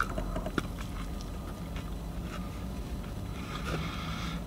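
A person chewing a mouthful of deep-fried turkey sandwich, with a few soft clicks in the first second, over a low steady hum.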